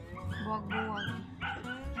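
Music playing, with a dog whimpering and yipping over it in high, sliding cries.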